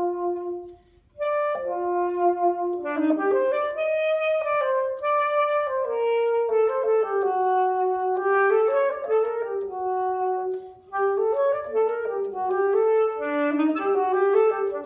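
Solo alto saxophone playing an unaccompanied melody of held and moving notes. There is a short break for breath about a second in and another brief one near eleven seconds.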